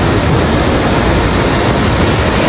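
Loud, steady rush of a waterfall, an even wash of falling water.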